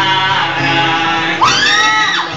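Live acoustic band: a male voice singing into a microphone over strummed acoustic guitars. About a second and a half in, a loud high cry rises and falls over the music.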